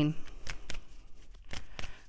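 A tarot deck being shuffled by hand: a run of soft, irregular card clicks and slaps.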